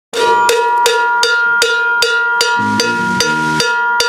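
A drummer striking a ringing metal piece of the drum kit in a steady beat, a little under three strikes a second, each hit leaving a sustained bell-like ring. Low guitar chords come in briefly about two and a half seconds in.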